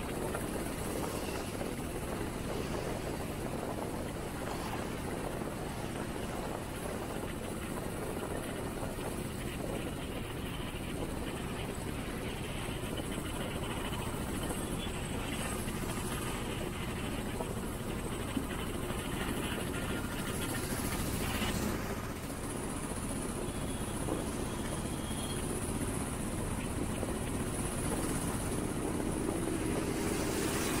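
Onboard noise of a vehicle driving along a road: a steady low rumble of engine, tyres and wind. It grows louder near the end as a lorry passes close alongside.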